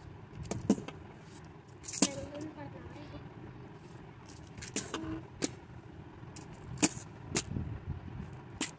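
Small plastic jars of pearl beads being set down and stacked on a tabletop: a series of sharp clicks and knocks, about seven in all, over a low background rumble.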